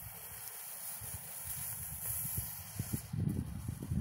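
A lit smoke ball hissing as it catches and starts pouring out orange smoke, the hiss building near the end. Wind rumbles on the microphone underneath.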